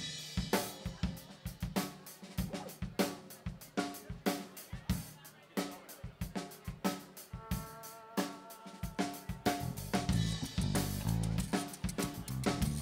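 A live rock band opening a song: a steady drum-kit beat with snare, hi-hat and cymbals under picked electric guitar and keyboard notes. About nine seconds in, the bass and the fuller band come in.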